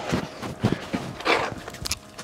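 Scuffs, knocks and clothing rustle of a person getting up from lying under a car on a concrete floor, with a louder rustle a little past halfway and a sharp knock near the end.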